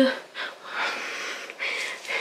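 A person breathing out audibly close to the microphone: a few soft, breathy puffs without voice.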